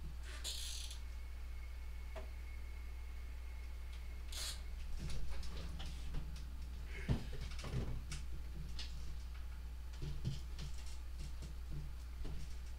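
Steam iron giving two short hisses as quilt-block seams are pressed open, followed by small knocks and fabric rustles as the iron is set down and the block handled, over a steady low electrical hum.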